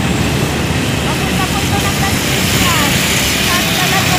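Steady wind rush and road noise from riding a motor scooter in traffic, with the scooter's engine running underneath. Faint voices come through in the middle.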